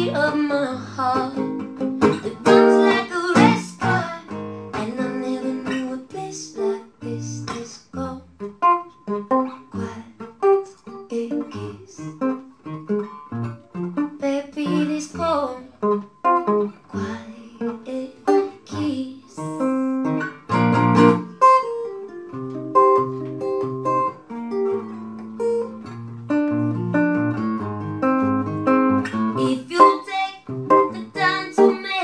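Live song: a woman singing over her own strummed acoustic guitar, steady repeated chords under a sung melody.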